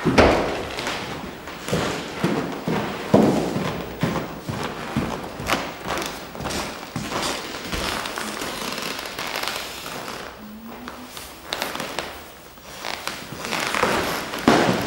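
A run of irregular thumps and knocks over a noisy background, the loudest near the start and about three seconds in.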